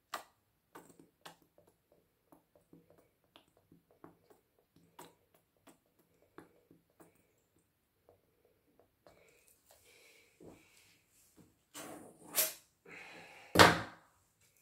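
Scattered light clicks and taps from handling a plastic syringe over a wet acrylic pour, followed near the end by rustling and two sharp knocks, the second the loudest.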